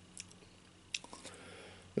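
Quiet room tone with a few faint short clicks, the sharpest just before the middle.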